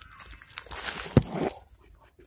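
Rustling, crinkling handling noise that swells in the middle, with one sharp thump a little over a second in.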